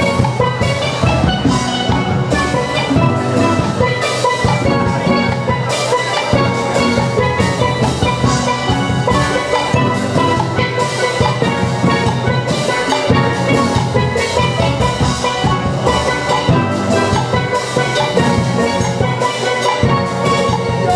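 A steel orchestra playing live: several steelpans ringing out melody and chords over a steady drum beat.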